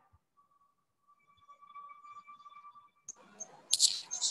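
A faint, steady, high electronic tone hums on the video-call audio for a couple of seconds. Near the end come a click and a rush of hiss and noise as a participant's microphone comes on.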